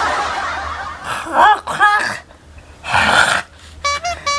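A man hisses and gasps through his mouth with short strained cries in between, reacting to the burn of a raw red chili he has just bitten. A long hissing breath opens, short cries follow about a second in, and another sharp hissing breath comes near the end.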